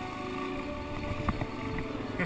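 Suzuki DR-Z400 single-cylinder engine running at steady revs while riding a dirt trail, with a single knock about a second and a quarter in.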